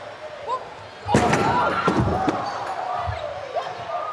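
A loud slam about a second in, from a brawl among merchandise tables, followed by shouting voices.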